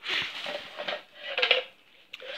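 Black plastic bin bag rustling and crinkling as a hand rummages through it, with light knocks of plastic items inside. There are two spells of rustling, the second about a second and a half in.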